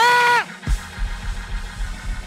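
A man's amplified voice holding a high, drawn-out shouted note, wavering at first and then steady, that breaks off about half a second in. Church music follows with uneven low bass-drum thumps.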